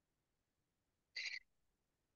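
Near silence, broken about a second in by one short, high-pitched sound lasting about a quarter of a second.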